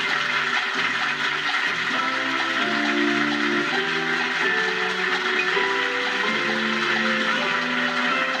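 Closing theme music of a TV quiz show, a tune of held notes, over studio audience applause, heard through a television's speakers.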